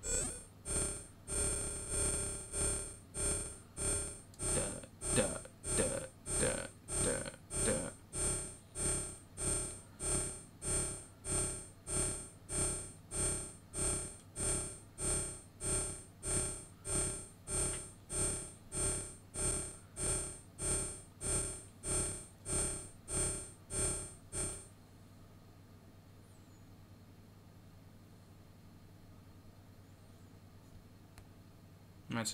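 Modular synthesizer bass note, resonant and ringing, pulsing evenly about four times every three seconds as it is passed through a filter and VCA to compare the filter's low-pass and high-pass outputs. The pulsing cuts off suddenly about 25 seconds in, leaving only a faint low hum.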